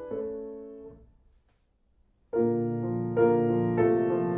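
1925 Chickering concert grand piano being played: a chord dies away to near silence, then a little over two seconds in a fuller passage of chords with low bass notes begins. This is the part of the piano restrung in softer Paulello type O wire, which is meant to give more warmth.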